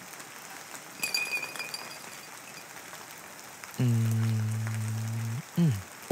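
A man's low voice holding one long, level hummed note for a second and a half, ending in a short falling glide, over a steady faint hiss.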